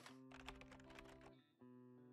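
Faint intro jingle: held musical notes with a run of quick clicks over them, dropping out briefly about one and a half seconds in.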